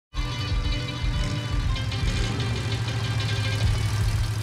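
Old Chevrolet pickup truck's engine running at idle, a steady low rumble, with music over it.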